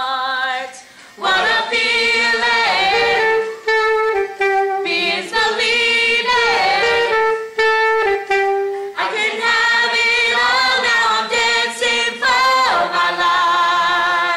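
A group of young voices singing a song together, in phrases with a short break about a second in and brief gaps between lines.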